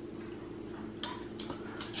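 Quiet room tone with a steady low hum, broken by a few faint clicks in the second half.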